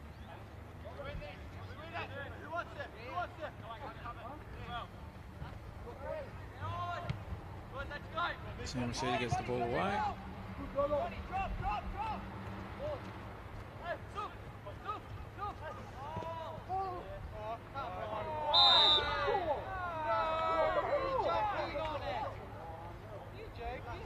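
Footballers calling and shouting to each other on the pitch, with a short, shrill referee's whistle about three-quarters of the way through, blown to stop play for a free kick, followed by a burst of louder shouting.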